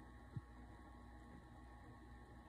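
Near silence: the faint steady hum of a desktop computer running, with one soft short tap less than half a second in.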